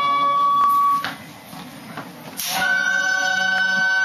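Gagaku court music: a wind instrument holds a steady high note over sharp strikes about once a second. The music cuts off about a second in, and after a quieter stretch a higher held note starts about two and a half seconds in.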